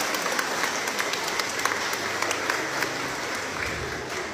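Audience applauding: a dense patter of many hands clapping that eases off slightly near the end.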